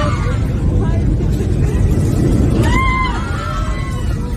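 Heavy low rumble of an airliner cabin being shaken in turbulence, with passengers' voices; a high-pitched voice cries out about three seconds in.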